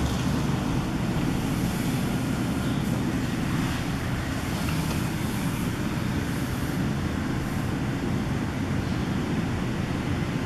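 Steady low rumbling background noise, even throughout, with no distinct animal sounds standing out.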